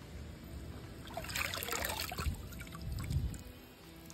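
Water trickling and splashing off a slatted matapi shrimp trap as it is lifted out of the water, draining through the gaps between its slats; the splashing is loudest about a second and a half in.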